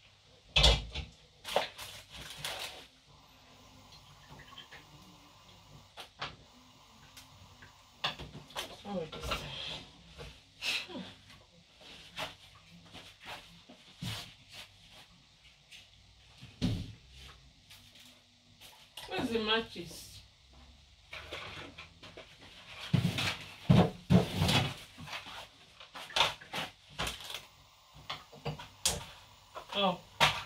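Kitchen handling noises: scattered knocks and clicks as a large steel pot and lid are handled and set on a gas hob, with a few short bursts of voice.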